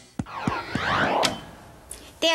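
A short swirling transition sound effect between scenes: criss-crossing rising and falling pitch glides lasting about a second, after a few sharp knocks, with a single click near the end.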